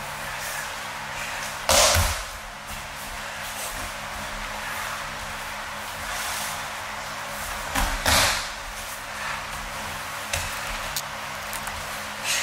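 Aikido attackers being thrown and breakfalling onto the tatami mat: two loud thuds, about two seconds in and about eight seconds in, over a steady hiss.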